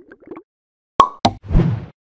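Cartoon-style pop sound effects on an animated outro. A sharp pop comes about a second in and a second pop a quarter second later, followed by a short, deeper burst of noise.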